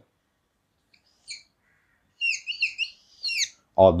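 Whiteboard marker squeaking in short, high, down-bending squeaks: one about a second in, then four quick ones as a box is drawn around an answer.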